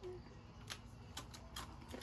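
Faint, scattered crinkles and clicks of a foil snack packet being handled, about half a dozen small ticks spread over the two seconds.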